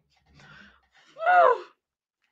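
A woman laughing: faint breathy sounds, then one short, loud, high vocal laugh about a second in, its pitch rising and then falling.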